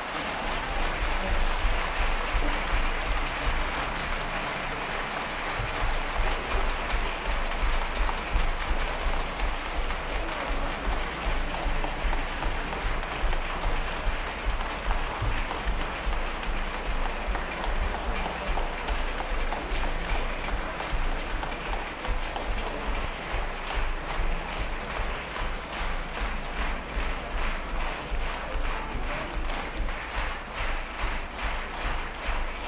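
Concert audience applauding after the final chord of the performance, a dense and steady clapping. Near the end it turns into even, rhythmic clapping in unison.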